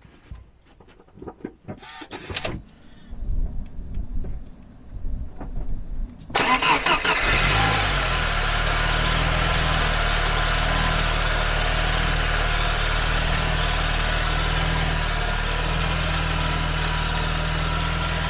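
A few soft knocks, then about six seconds in the 1996 Saab 900's starter cranks the engine for about a second. The engine catches and settles into a steady idle. It is a normal crank on an old battery at 54% health, with the voltage dipping to 9.93 V.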